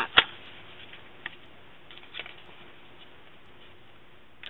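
Cardstock being lifted off a sticky cutting mat and handled: a sharp click just after the start, then two faint ticks about a second apart over quiet room noise.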